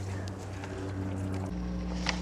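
A steady low hum with a faint background hiss; its lowest part shifts abruptly about one and a half seconds in.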